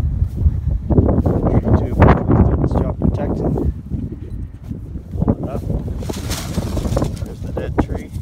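Footsteps crunching through snow, irregular and strongest in the first few seconds, over a steady low rumble of wind buffeting the microphone.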